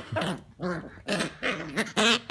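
Small long-haired dog growling and whining in a quick series of short outbursts, worked up during a scuffle with another dog.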